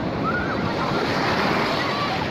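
Ocean surf breaking and washing in over the shallows in a steady rush that swells a little in the middle, with faint voices of people in the water.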